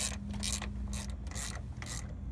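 Socket ratchet clicking in short strokes, about two a second, as a bolt is run in on a motor mount.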